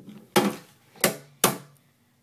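Three sharp knocks within about a second, the loudest sounds here: handling noise as the camera is moved close along a glass tank.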